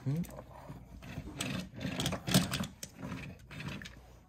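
Hard plastic toy vehicle and action figures being handled: a run of clicks, knocks and rattles as parts are turned and pressed together, the loudest knock a little past two seconds in.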